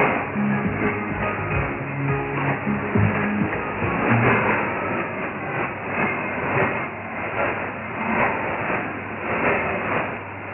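A song played over a shortwave AM broadcast, heard through a haze of static with narrow, muffled audio: NBC Bougainville on 3325 kHz. Clear held bass notes in the first few seconds give way to blurrier music under the noise.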